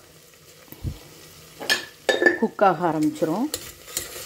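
A steel ladle stirs sliced small onions frying in oil in a stainless-steel pressure cooker, with a light sizzle. About halfway through, the ladle scrapes and clinks a few times against the pot, followed by a short voiced hum.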